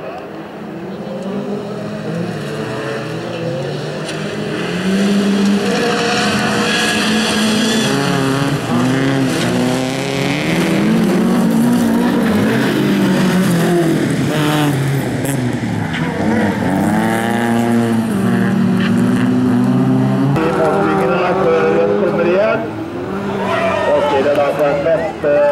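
Several bilcross race cars' engines revving hard, their pitch climbing and dropping as they go up through the gears and lift off, growing louder about four seconds in as the cars come closer.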